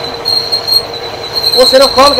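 Bench drill press running and boring into a metal part, with a steady high-pitched squeal as the bit cuts under hand feed pressure.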